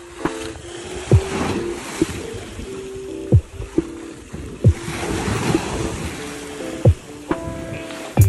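Lo-fi background music with a deep kick drum and sustained chords, over the wash of small waves breaking against a sea wall.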